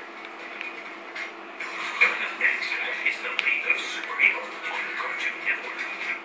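Television audio of a cartoon's end credits, picked up off the set's speaker. It sounds thin, with no bass and a steady low hum under it. Voice-like sounds and some music grow louder from about a second and a half in.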